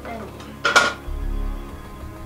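A hard plastic capsule clattering in the outlet of a gashapon capsule-toy machine as it is taken out: one sharp clatter less than a second in.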